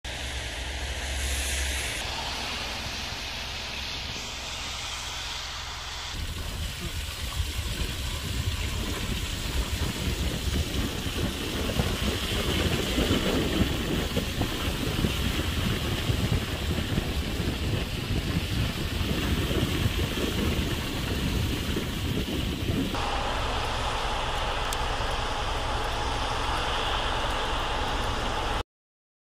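Outdoor ambience over several short clips: wind gusting on the microphone through most of it, then steady vehicle road noise near the end.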